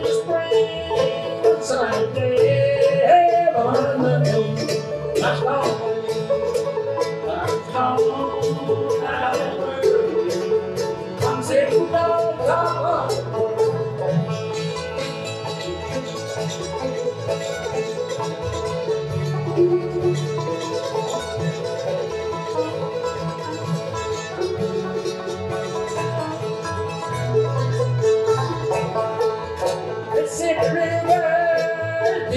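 Acoustic bluegrass band playing: picked five-string banjo, mandolin and acoustic guitar over upright bass. The picking is busier and louder in the first half.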